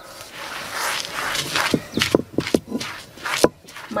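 Stone batán grinding guiñapo (dried sprouted maize): the rocking upper stone makes a gritty crushing scrape over the grain on the stone slab, with a run of sharp knocks in the second half as it rocks against the slab.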